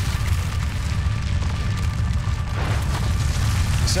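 Deep, steady low rumble of cinematic trailer sound design under the score, with a brief swell of noise near the end.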